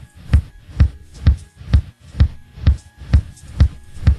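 Techno dance beat: a kick drum thumping evenly about twice a second, four-on-the-floor, with faint ticks between the beats.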